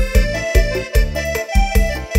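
Thai retro ramwong dance music played live by a band: a held melody line over a steady kick-drum beat, about two beats a second.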